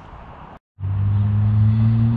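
Faint outdoor background noise, a sudden cut to silence just over half a second in, then a steady low machine hum on one even pitch that runs on.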